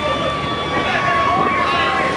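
Passengers' voices chattering aboard a departing sightseeing speedboat as its engines run, with a steady high tone held for about two seconds that ends near the end.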